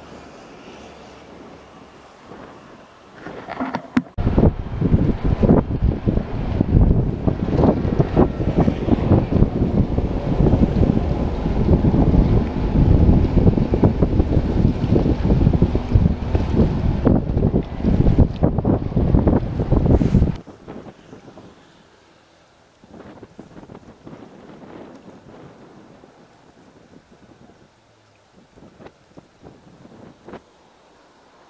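Wind buffeting the action camera's microphone: a loud, rough rumble that sets in about four seconds in and cuts off suddenly after about twenty seconds, leaving only faint wind noise.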